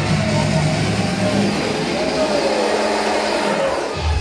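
Club dance music in a breakdown: the bass and beat fall away over the first two seconds, leaving a hissing noise build, with voices and shouts from the crowd.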